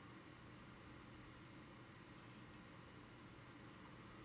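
Near silence: faint steady hiss of microphone room tone.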